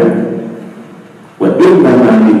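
A man's voice speaking into a headset microphone, with a short pause about a second in.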